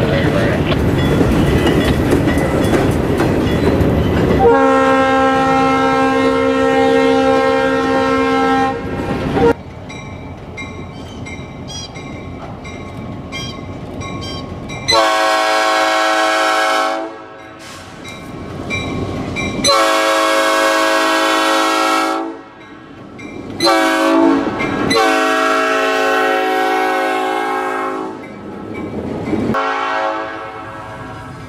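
A freight train's hopper cars roll past on the rails for the first few seconds, followed by a long horn blast. From about fifteen seconds in, a diesel locomotive's air horn sounds long, long, short, long, the standard grade-crossing signal.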